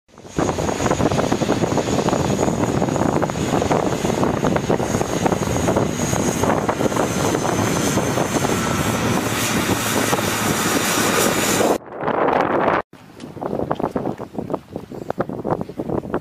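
A low-flying aircraft passing overhead: loud steady engine noise with a thin high whine, mixed with wind on the microphone, cutting off suddenly about twelve seconds in. After that, wind buffeting the microphone in gusts.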